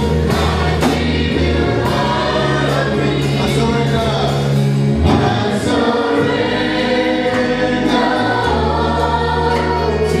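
Church choir singing gospel music with band accompaniment: sustained bass notes that change every couple of seconds under the voices, and regular drum hits.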